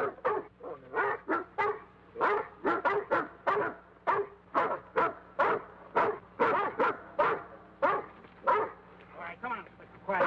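Watchdogs barking over and over, about two to three short barks a second, without a break.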